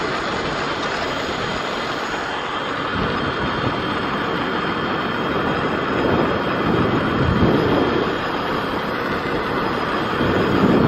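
Wind rushing over the microphone with tyre noise on asphalt from an electric bicycle riding at speed, the wind buffeting in gusts that grow stronger from about three seconds in.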